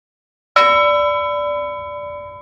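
A single bell chime struck about half a second in, ringing at several steady pitches and slowly fading.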